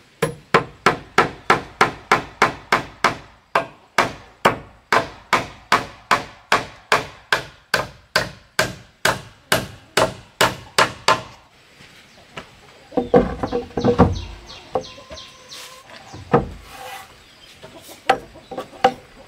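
Claw hammer driving nails into thick wooden planks: a steady run of sharp blows, about three a second, that stops about eleven seconds in, followed by a few scattered knocks.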